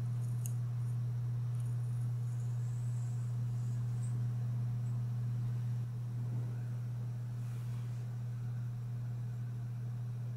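A steady low hum, with a faint click and soft plastic scratching from a hair clip being handled in the first few seconds.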